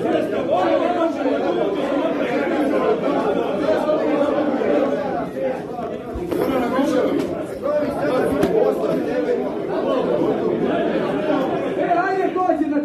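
Many men talking over one another at once: indistinct crowd chatter in a large hall.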